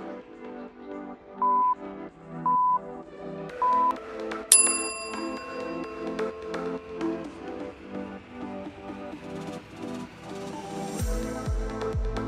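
Interval timer countdown: three short, identical beeps about a second apart, then a higher, louder tone that rings on, marking the start of the next exercise. Electronic workout music plays throughout, with a heavier bass beat coming in near the end.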